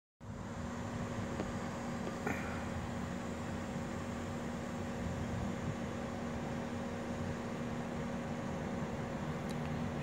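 Steady mechanical hum with a constant low tone, with one faint click a little over two seconds in.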